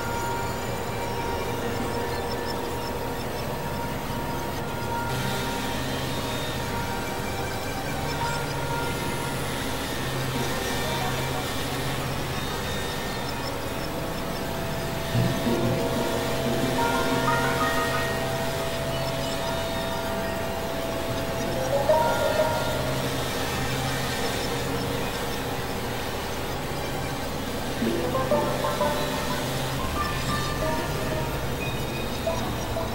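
Experimental electronic drone music: steady held synthesizer tones over a low pulsing hum, with rising pitch sweeps about halfway through, around two-thirds of the way and near the end.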